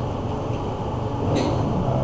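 Steady low rumbling background noise with a hum, and a brief hiss about one and a half seconds in.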